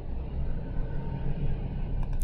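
Steady low background rumble with no distinct events in it.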